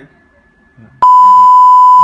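A loud, steady, high electronic beep, a single pure tone like a censor bleep, comes in abruptly about a second in and lasts about one second.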